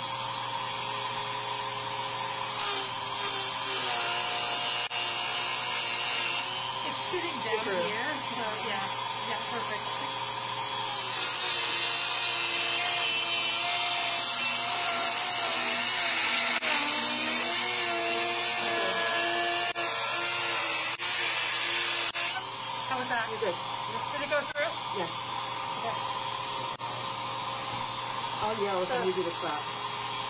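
A small handheld rotary tool with a thin cutting disc cutting through the wall of a copper box: a steady high-speed whine whose pitch shifts as the disc bites, with a hissing grind of disc on metal from a couple of seconds in until a few seconds after the midpoint, loudest just before it stops.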